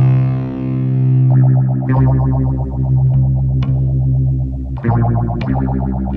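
Instrumental doom metal: a held, heavily distorted electric guitar chord over a steady low bass drone, changing a little over a second in to a rapidly pulsing guitar figure, with a few scattered drum hits.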